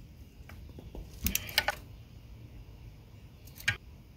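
A quick run of sharp metallic clicks a little over a second in, and one more click near the end: a socket ratchet and extension being handled on the valve-cover bolts.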